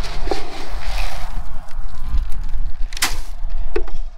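A plastic scoop digging and scraping through feed inside a plastic barrel, with a few sharp knocks, the loudest about three seconds in.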